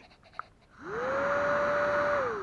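Small DC motor of a battery-powered barbecue blower starting up about a second in. A quick rising whine settles into a steady hum with a rush of air from the fan.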